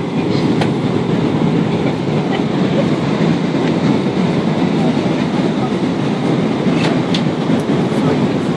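Steady low roar of an airliner's cabin in flight: engine noise and rushing air, even throughout. A couple of light clicks are heard in the cabin, one soon after the start and one near the end.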